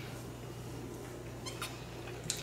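A man gulping water from a plastic bottle, with a brief crackle of the bottle about a second and a half in, over a steady low electrical hum.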